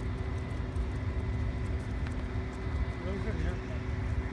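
Steady low rumble of city background noise with a thin constant hum, and faint voices or calls about three seconds in.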